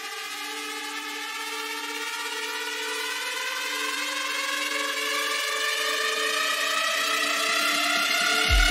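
Breakdown of a melodic techno track: a synth riser climbs steadily in pitch and grows louder over two held low synth notes, with no kick drum or bass.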